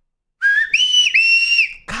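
A person whistling with the fingers of one hand in the mouth: a short lower note rising into two long, high, held notes with a brief break between them. It is a loud calling whistle.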